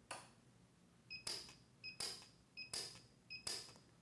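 Lampert PUK U5 micro TIG welder firing four weld pulses about three-quarters of a second apart, each a short high beep followed by a brief burst of arc noise, as it lays overlapping spot welds along an edge.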